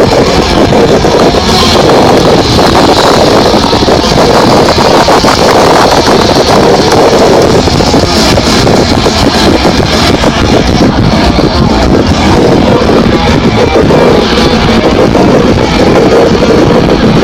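Live death metal band playing at full volume, recorded so close and loud that the phone microphone is overloaded: the music comes through as a continuous, heavily distorted and clipped wall of sound with no breaks.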